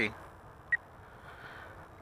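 Quiet outdoor background, with a single short high-pitched blip about three-quarters of a second in.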